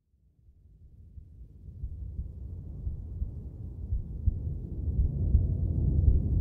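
A deep rumble fades in from silence and grows steadily louder, the opening of the next track's intro.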